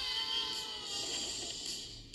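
Cartoon characters letting out one long falling yell whose pitch slides slowly downward, over a high hissing whoosh, as they drop after their climbing ropes are cut. The sound is heard through a TV speaker.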